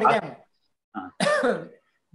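A man's speech that breaks off about half a second in, then after a short pause a brief throat clearing.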